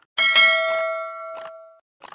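Notification bell sound effect: one bright ding that rings and fades away over about a second and a half. A short mouse-click sound comes just before it and another about a second and a half in.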